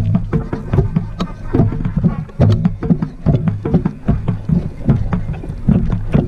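High school marching band playing: low brass holding chords, with crisp drum strokes over them.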